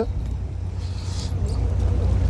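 Fishing boat's engine running with a steady low rumble. A faint brief hiss comes about a second in.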